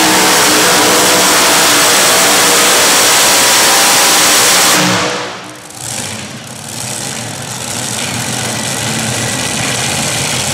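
A Super Modified pulling tractor's several supercharged engines run at full throttle under load. About halfway through the throttle is closed and the engine note winds down, then settles to a steady idle.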